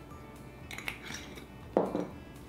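A spice shaker shaken over a bowl, a brief dry rattle of powder about a second in, then one loud knock on the wooden table near the end as it is set down. Soft background music underneath.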